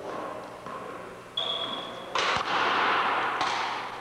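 One-wall handball play on a wooden gym floor: a short high squeak about a second and a half in, then from about two seconds a louder noisy stretch with a few sharp smacks of the ball.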